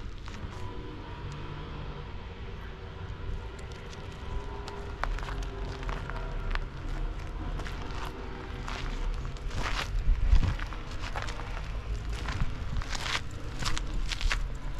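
Footsteps crunching on loose gravel and grit, irregular and busier in the second half, over a low steady rumble.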